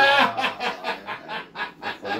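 A man laughing: a loud burst at the start, then a quick run of short laughs that die away.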